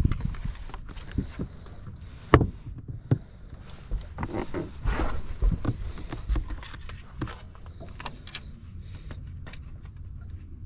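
Irregular knocks and thumps as a largemouth bass is handled on a bass boat's carpeted deck and laid on a plastic measuring board, with one sharp knock about two and a half seconds in and a busier run of knocks in the middle.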